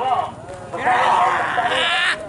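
Men yelling long, wavering calls, several voices overlapping and louder from about halfway through: handlers calling a racing pigeon down to the landing box.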